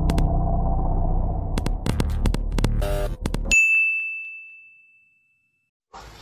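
Edited transition sound effect: a low steady rumble sprinkled with sharp crackling clicks, cut off about three and a half seconds in by a single bright ding that rings and fades away over about a second and a half.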